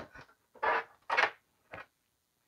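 Four short rustling scrapes about half a second apart: power supply cables and plastic connectors being handled inside a desktop PC case.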